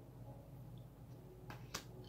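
Two quick taps about one and a half seconds in, the second the louder: an oracle card being laid down onto a stack of cards.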